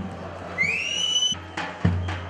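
A shrill whistle blast that rises in pitch for just under a second and cuts off abruptly, over low, irregular drum beats.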